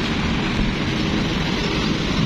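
Steady road traffic noise at a busy intersection: engines running and tyres on the road, without a break.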